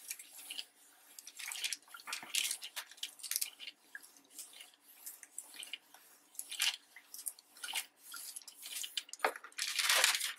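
Clothes iron sliding back and forth over parchment paper laid on a printed sheet: an irregular dry rustling scrape of the iron's soleplate on the paper. Near the end the paper rustles louder as the parchment sheet is lifted off.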